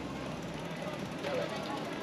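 Busy street ambience: passers-by talking, with a vehicle's engine rumble fading out in the first half second.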